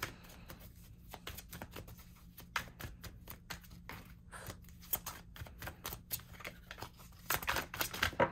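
A tarot deck being shuffled overhand by hand: a quick, irregular run of soft card-on-card slaps and riffles, with a louder flurry near the end.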